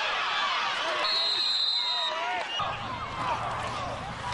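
Several people talking and calling out over one another, indistinct, with a brief high steady tone lasting about a second near the middle.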